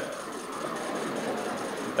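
Steady, low background noise of the theatre hall, with no distinct events.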